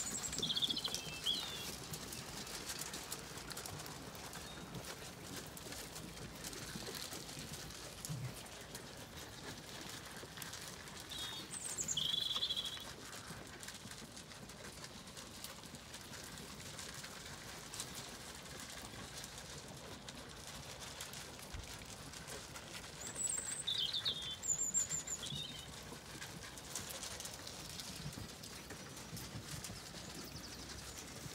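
Small wild birds chirping in short high phrases: once at the start, again about twelve seconds in and again about twenty-four seconds in. Between them a quiet outdoor background with faint rustling and ticking from the sheep feeding and moving.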